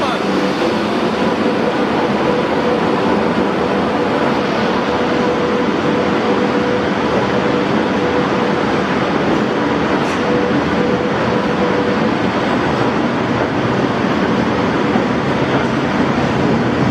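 Bhopal Shatabdi Express coaches rolling past along the platform as the train pulls in, a steady loud rush of wheel and running noise. A steady tone rides on top of it and fades out about twelve seconds in.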